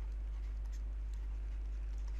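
Faint scattered ticks and scratches of a stylus writing on a tablet, over a steady low hum.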